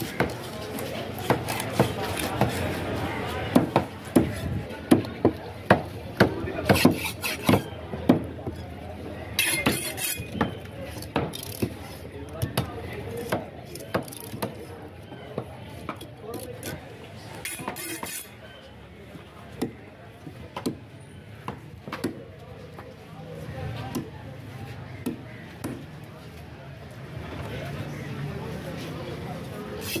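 Large knife chopping tuna into chunks on a wooden cutting board: repeated sharp knocks, coming fast through the first eight seconds or so and more sparsely after that.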